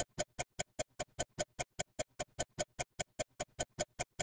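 Ticking-clock sound effect: fast, even ticks at about five a second, standing for baking time passing.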